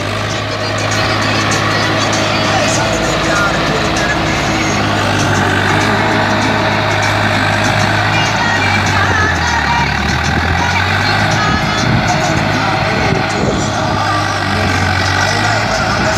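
Swaraj 744 FE tractor's diesel engine running steadily under load while pulling a trolley heaped with soil.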